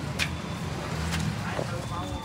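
Busy street ambience: a steady low rumble of traffic with faint voices around and a couple of brief clicks.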